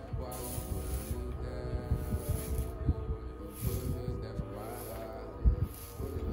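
A hot clothes iron pushed back and forth over a damp rag, hissing in several short bursts as the water in the rag turns to steam: steam, not scorching. Background music with sustained notes plays throughout.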